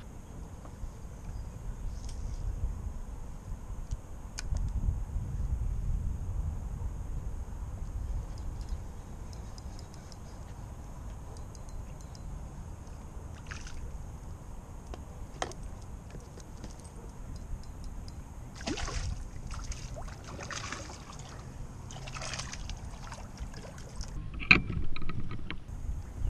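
Water lapping and sloshing against a kayak hull under a steady low rumble, with scattered small clicks. A cluster of short splashy bursts comes about three-quarters of the way through, and there is a sharp knock near the end.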